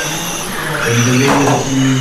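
Electric 1/12-scale RC pan cars running on a carpet track, their motors giving a steady high whine, with a swell of noise about halfway through as the cars pass.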